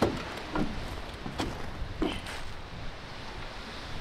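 Steady wind and surf noise, with about four short knocks and thuds in the first half as someone steps about in an old metal dinghy's hull and sits down on its seat.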